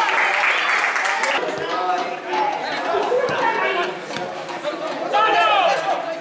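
Football crowd and players shouting and talking, several voices at once, loudest in the first second or so.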